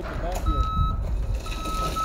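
Forklift reverse alarm beeping: two steady beeps about half a second long and a second apart, over a low engine rumble.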